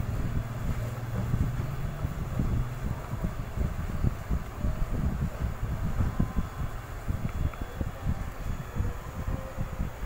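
Low, uneven rumbling noise on the microphone, like wind or moving air buffeting it.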